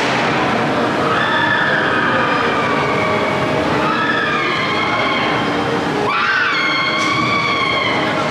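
Winjas spinning coaster cars running on the steel track overhead, the wheels giving a steady rumble with several whining tones that slide up and down in pitch. A louder, sharper whine comes in suddenly about six seconds in as a car passes closer.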